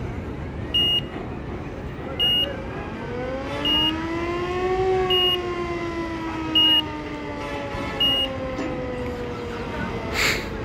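A large vehicle's reversing alarm beeping six times, about once every one and a half seconds, over its engine, which revs up over a couple of seconds and then slowly winds down as it moves.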